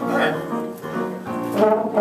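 A trumpet and trombone duet played live: short, broken notes, then a full held chord that begins near the end.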